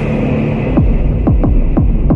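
Electronic logo-reveal sound effect: a loud low hum, with a run of quick falling-pitch sweeps starting just under a second in and coming faster and faster.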